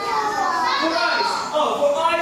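A man's voice and many young children's voices together in a classroom during an English lesson.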